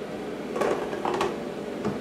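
Glass French press carafe being handled on a kitchen counter: a few light knocks and clinks as it is lifted and set down.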